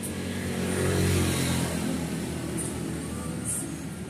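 Engine of a passing motor vehicle, growing louder about a second in and then slowly fading away.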